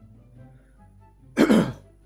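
A man clears his throat once, a short loud burst about one and a half seconds in, over faint steady background music.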